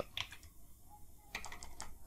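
Faint computer keyboard keystrokes: a couple of taps at the start, then a quick run of several keys about a second and a half in.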